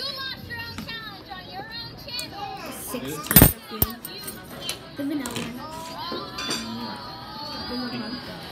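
Children's voices and background music, with a loud knock on the phone about three and a half seconds in and a softer one just after.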